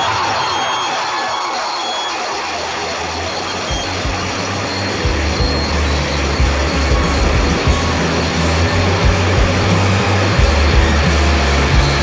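Harsh noise passage in a hardcore punk recording: a dense grinding, hissing wash with a low hum beneath it, the hum growing heavier about five seconds in.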